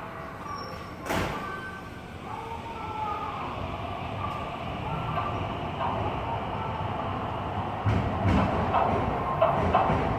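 Keio 1000-series electric train pulling out of the platform, its running noise slowly building. A sharp click comes about a second in, and a run of clattering wheel knocks over the rails and points comes in the last two seconds.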